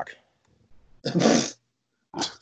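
One short, breathy burst of a person's voice about a second in, lasting about half a second.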